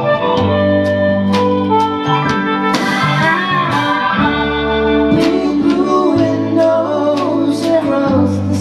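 Live band playing a slow song: sustained organ and piano chords over electric guitar, bass and a steady drum beat.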